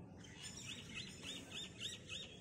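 A bird singing a run of short, repeated chirps, about three a second, each a quick rising-and-falling whistled note.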